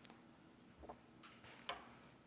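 Near silence broken by a few faint, short plastic clicks and crinkles: pre-packaged communion cups being peeled open and handled.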